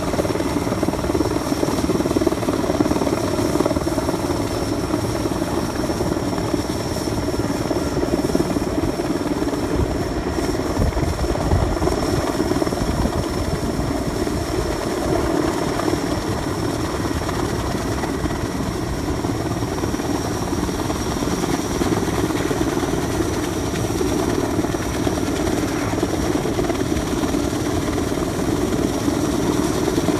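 Sikorsky S-64 Skycrane heavy-lift helicopter hovering with a transmission-tower section slung beneath it. Its rotor noise and twin turbines run steadily throughout, with a constant high turbine whine over the steady rotor noise.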